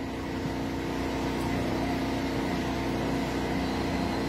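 A steady mechanical hum holding several even tones, at a constant moderate level.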